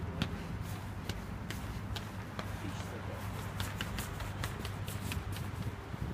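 Running footsteps of sports shoes on concrete steps, quick sharp taps about two or three a second, as a runner climbs against a rubber resistance band. A steady low rumble runs underneath.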